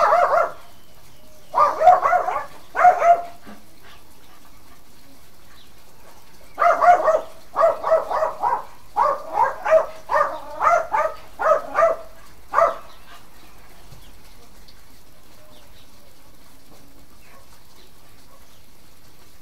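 A dog barking: three barks in the first few seconds, then after a pause a rapid run of about a dozen barks that stops a little before the halfway mark of the second half.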